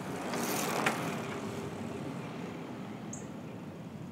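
A bicycle passing close by, its tyres rushing on the lane surface and swelling to a peak with a click about a second in, then fading as it rides off.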